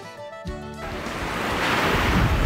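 Background music that stops about a second in, giving way to steady ocean surf washing onto a beach, growing louder toward the end.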